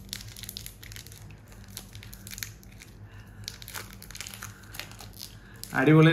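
KitKat Chunky chocolate-bar wrapper crinkling and crackling in small irregular bursts as it is pulled open by hand.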